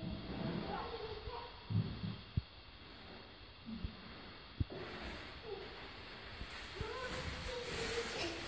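Young children's voices, faint calls and babble, while they play outdoors, with a few short knocks in the middle.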